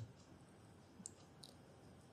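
Near silence with two faint clicks, about a second in and less than half a second apart, from working a computer.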